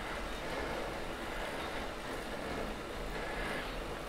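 Bike drivetrain spinning on a Wahoo KICKR 2018 direct-drive smart trainer at about 20 mph: a steady, quiet whir of chain, cassette and trainer flywheel, with no knocks or clicks, picked up by a lavalier microphone.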